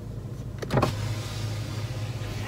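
Car's electric window motor running as the side window is lowered: a click about three-quarters of a second in, then a steady low hum.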